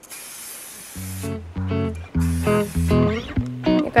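Aerosol can of alcohol spray hissing in a burst, with a second spray burst a couple of seconds in. Background music with plucked guitar starts about a second in and is the loudest sound.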